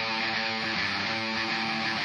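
A punk rock song's breakdown: electric guitar strumming sustained chords on its own, with no drums or vocals.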